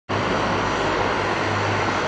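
A steady engine drone with a constant low hum under a dense rushing noise.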